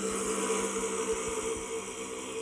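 Background music built on a steady, sustained drone, with held low notes and no rhythm of strokes, entering right at the start.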